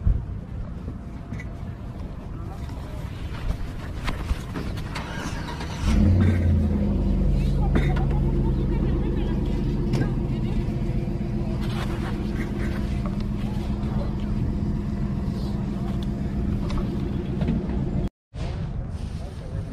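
Car engine starting about six seconds in, then running at a steady speed.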